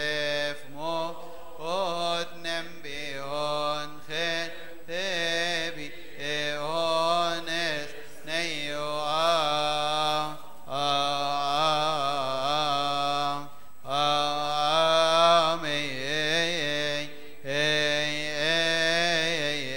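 A man chanting a slow, melismatic Coptic liturgical hymn solo, on long held notes with wavering ornaments and short breaks for breath.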